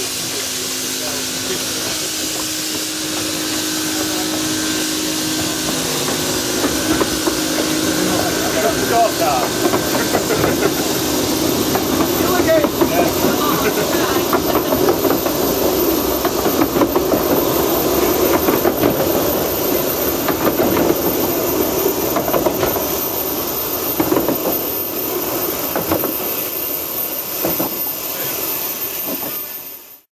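A 15-inch gauge steam locomotive departing, hissing steam, followed by its coaches rolling past with a continuous clattering of wheels on the rails that builds after several seconds and eases off near the end.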